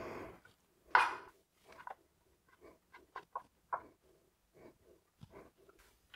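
Kitchen knife cutting rinded goat's cheese on a plastic chopping board: one sharper scrape about a second in, then a run of light, irregular taps as the blade meets the board.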